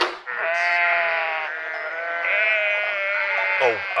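Goat bleating: one long, wavering bleat lasting about three seconds.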